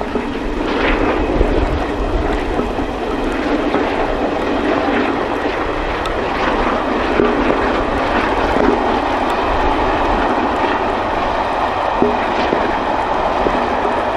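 LMS Royal Scot class 46100, a three-cylinder 4-6-0 steam locomotive, working a passenger train at speed, heard from afar as a steady rushing exhaust and train rumble. The sound swells slightly in the first couple of seconds, then holds.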